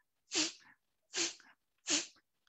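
Three short, forceful exhalations through one nostril, about one every three-quarters of a second: kapalbhati breathing strokes, each a quick puff of air out of the nose while the other nostril is held closed.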